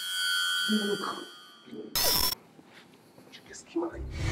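Film sound design: a held drone of steady high tones, broken about two seconds in by a sudden half-second burst of static-like noise. After that comes a quiet stretch with brief breathy vocal sounds.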